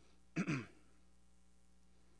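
A man briefly clears his throat once, about a third of a second in. It sounds through a lectern microphone over a low steady hum.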